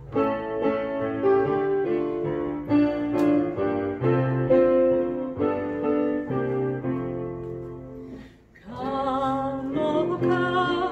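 Piano playing the introduction to a hymn in sustained chords. A woman's voice enters singing with vibrato just before the end.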